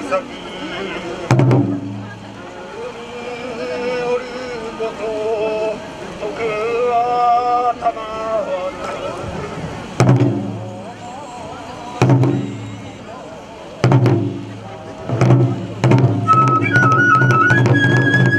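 Hoin kagura music: a voice chanting in long wavering phrases, punctuated by single strikes on large taiko drums. Near the end the drums settle into a steady beat and a bamboo flute melody joins.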